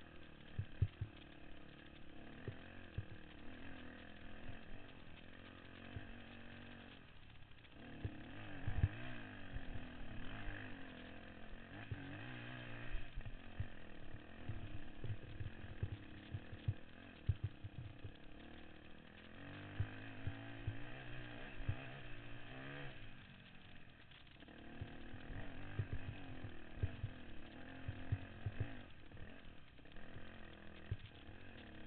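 Trail motorcycle engine running and revving up and down as it is ridden, with frequent low thumps and knocks along the way.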